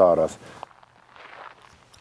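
A man's voice trails off in the first half-second, then faint footsteps through dry grass.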